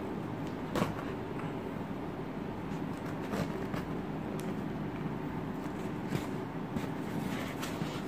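Cardboard shipping box being handled and turned over, with a few light knocks and scrapes over a steady low background hum.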